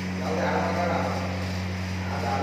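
A drawn-out voice-like call lasting about a second, starting just after the beginning, over a steady low hum.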